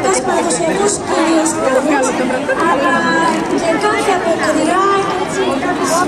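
Overlapping voices of people talking in an outdoor crowd: steady chatter.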